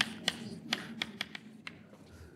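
Chalk tapping and scraping on a blackboard as letters are written: a quick run of sharp taps, about four a second, that stops shortly before the end.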